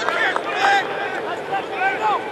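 Indistinct voices of several people calling out across an open football practice field, overlapping, with no words clear.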